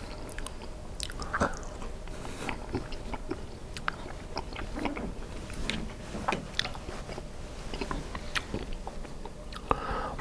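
Close-miked chewing of a mouthful of Stouffer's Bowl-Fulls Southwest-style mac and cheese, with short wet mouth clicks scattered irregularly throughout.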